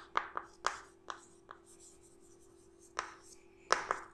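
Chalk writing on a chalkboard: short taps and scratchy strokes, a cluster in the first second and a half, a pause, then more strokes near the end. A faint steady hum runs underneath.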